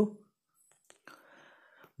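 A pause in a man's narration: near silence, then a faint breath of about a second, just before he speaks again.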